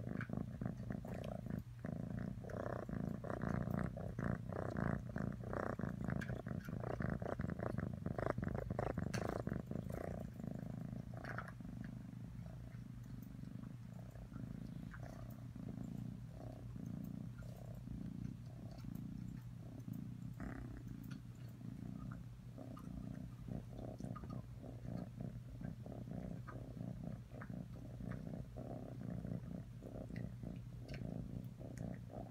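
Kitten purring steadily, a fast even rattle of pulses, louder for about the first ten seconds while it is right up against the microphone and softer after.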